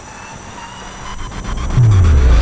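Trailer sound-design riser: a low rumble that swells over the second half, with a quick run of clicks about a second in, building toward a boom.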